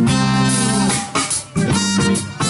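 Live band playing a funk instrumental, electric guitar to the fore over bass and drums, with a brief drop-out about one and a half seconds in before the band comes back in.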